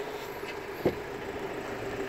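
The front door of a Ford Transit Custom van unlatching with a single short click about a second in, over a steady low hum.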